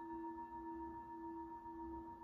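A singing bowl, just struck with a mallet, ringing on: a low steady tone with fainter higher overtones and a slight slow waver in loudness.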